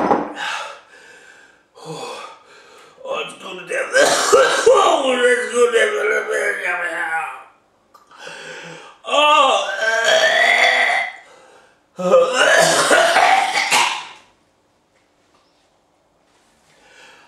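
A man's loud wordless vocal noises in several bursts, the longest starting about three seconds in, straining and bending in pitch, with quiet near the end. They are his reaction to the chilli burn of an extremely hot hot dog.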